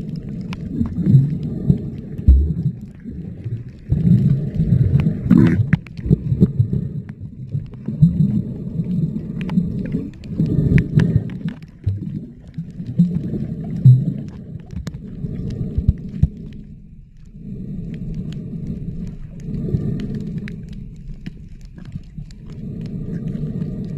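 Water movement recorded underwater while a snorkeler swims: low rumbling surges every two seconds or so, with scattered small clicks.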